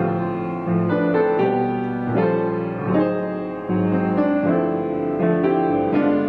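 Background piano music: a slow piece of sustained chords and melody notes.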